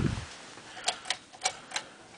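1988 Casablanca Lady Delta ceiling fan running on low: a faint steady hum under a low thump at the start and four sharp, unevenly spaced clicks from about one second in.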